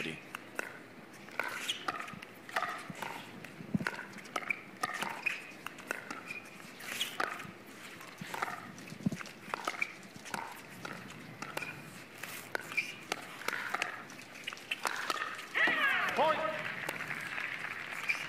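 Pickleball rally: paddles striking the hard plastic ball in a run of sharp pops at irregular spacing, with a voice calling out about three-quarters of the way through.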